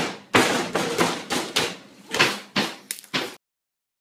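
Bare hand chopping down on a whole watermelon over and over, about nine sharp blows in three and a half seconds, each with a short ringing tail.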